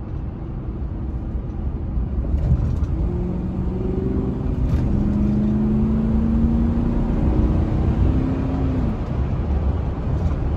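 A 2007 Ford F-150's 5.4-litre V8 accelerating hard under load, heard inside the cab. From about two seconds in, the engine note builds and slowly rises in pitch for several seconds, then drops near the end as the throttle eases. It pulls smoothly with no stumble, running on a full set of new ignition coil packs.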